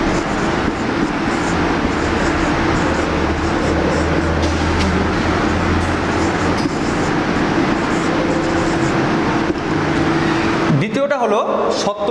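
A machine running steadily with a constant low hum.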